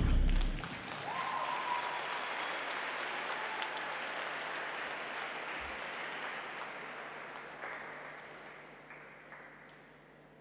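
The program music cuts off about half a second in, then a rink audience applauds, the clapping slowly thinning and fading away.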